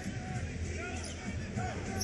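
Basketball being dribbled on a hardwood court over the steady murmur of an arena crowd, heard through a TV broadcast.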